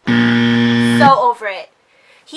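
Buzzer sound effect: one loud, steady, low buzz lasting about a second that cuts off suddenly, followed by a woman speaking briefly.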